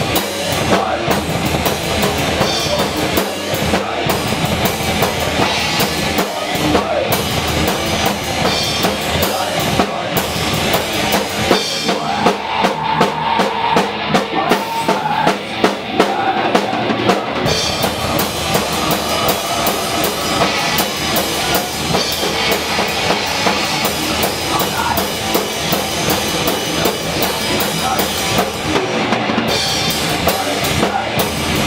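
Live rock band playing, with the drum kit to the fore: bass drum, snare and cymbals driving a steady beat. The cymbals drop out for a few seconds about halfway through, then the full kit comes back in.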